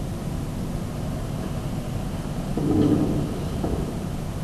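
Steady low background rumble, with a brief dull bump of handling noise about two and a half seconds in.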